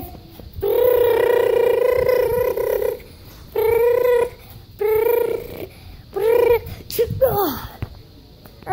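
A child's voice imitating a car engine: one long steady hum lasting about two seconds, then three shorter ones, and a falling slide in pitch near the end.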